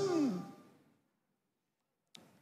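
A man's amplified voice trailing off on a drawn-out word whose pitch falls, fading out within the first half second, then silence.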